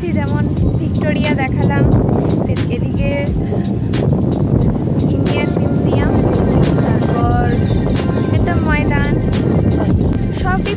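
A woman talking over background music, with a steady heavy low rumble underneath.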